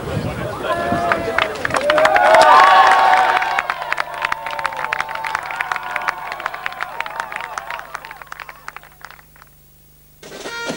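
A small group clapping and cheering, loudest about two to three seconds in, then the clapping thins out and fades away near the end.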